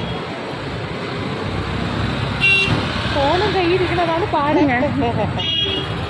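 Road traffic with engines running, and two short vehicle-horn toots, about two and a half seconds in and again near the end.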